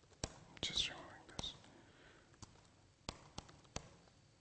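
Laptop keyboard keystrokes typing terminal commands: a handful of sharp, irregularly spaced clicks. A brief whispered mutter comes about half a second in.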